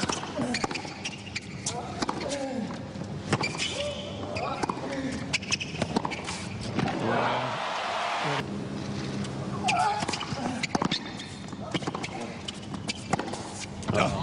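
Tennis rally: a racket hits the ball back and forth in sharp cracks, followed by crowd applause about seven seconds in. Later come scattered ball bounces and voices from the stadium.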